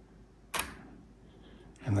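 A camera shutter clicking once, about half a second in, against faint room quiet.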